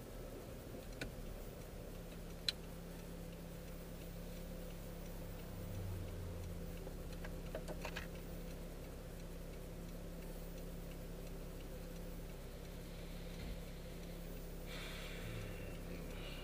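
Inside a car's cabin while it waits to turn: the engine idles as a low steady hum, and the turn-signal indicator ticks. A few sharper clicks stand out.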